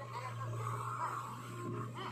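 Diesel engines of a JCB 3DX backhoe loader and a Mahindra 475 DI tractor running steadily as the backhoe lifts a loaded bucket of soil, with short warbling sounds over the engine drone.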